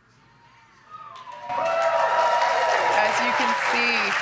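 A crowd cheering, whooping and applauding as the booster lands, breaking out suddenly about a second and a half in, with shouts and whistles over the clapping.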